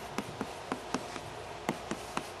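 Chalk writing on a blackboard: a quick, uneven run of short, sharp taps and clicks as the chalk strikes and strokes the board, about four or five a second.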